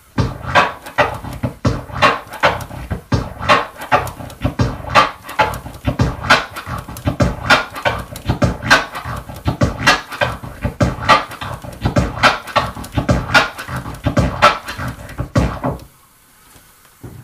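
Vinyl scratching of a kick-and-snare sample on a turntable, the record pushed forward and pulled back while the mixer's crossfader clicks it in and out. It is a repeating hybrid orbit scratch, a tear at the halfway point of each forward stroke and three triplet-time clicks on each backward stroke, giving six sounds per cycle. It starts at once and stops shortly before the end.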